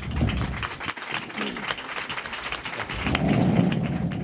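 Audience applauding: dense, many-handed clapping that swells about three seconds in.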